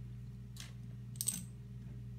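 Small hard object clicking as it is handled in a child's hands: a faint rustle, then a sharp click with a brief metallic ring about a second and a quarter in, over a steady low hum.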